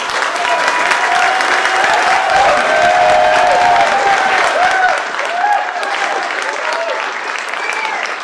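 Audience applauding, loudest for about the first five seconds and then easing off a little.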